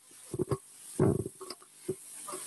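A person's voice making a few brief low murmuring sounds, the longest about a second in.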